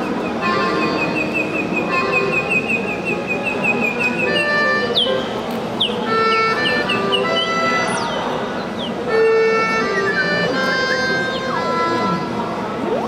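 Live experimental electronic music from a small ensemble of theremin, melodion, piano and Tenori-on. It opens with a rapid run of short repeated high notes, then moves to held notes at stepped pitches broken by several quick falling pitch swoops.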